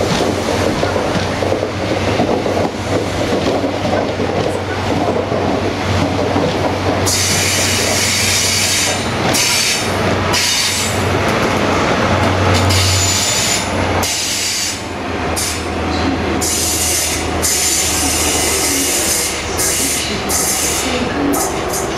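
First Great Western HST passing at low speed: Class 43 diesel power car engine drone, loudest around twelve seconds in as the power car goes by, over the rumble and clatter of Mk3 coach wheels on the rails. From about seven seconds in a high hiss comes and goes on top.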